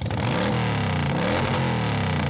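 Motorcycle engine revving sound effect, its pitch rising and falling, dubbed over a LEGO motorcycle driving off.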